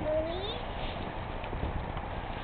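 A young child's short rising vocal sound at the start, then dry fallen leaves rustling and crunching as a toddler stomps and crouches in a leaf pile.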